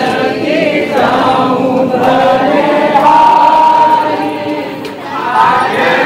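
A group of voices singing a bhajan, a Hindu devotional song, together, with one long note held about halfway through.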